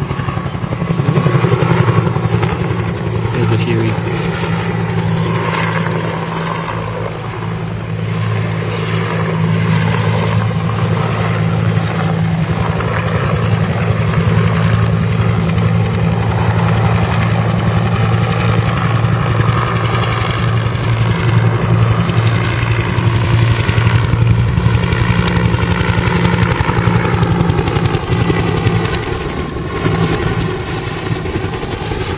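Bell UH-1 'Huey' helicopter in flight, its two-blade main rotor beating steadily over the turbine. The sound shifts slowly in pitch as the helicopter moves across the sky.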